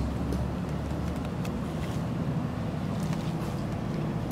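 Steady low background rumble, like a ventilation fan or distant machinery, with a few faint ticks.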